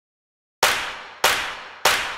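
Intro sound effect: three sharp, clanging hits, evenly spaced, each ringing off before the next, starting about half a second in.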